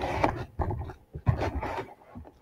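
A person chewing a mouthful of chip and salsa dip, heard as three irregular noisy bursts.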